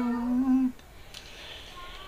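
A woman's voice holding the last steady note of a Dao folk song, sung in the Dao language, which trails off about two-thirds of a second in. A quiet pause follows before the next line.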